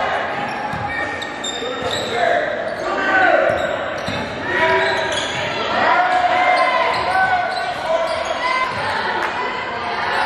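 Basketball game in a gymnasium: a basketball bouncing on the hardwood court while players and spectators call out and talk, many voices overlapping.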